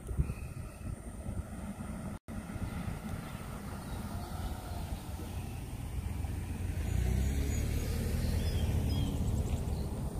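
A car, a white SUV, drives past close by: a low engine and tyre rumble builds about six or seven seconds in and stays loud to the end, over steady outdoor background noise. The sound cuts out completely for an instant about two seconds in.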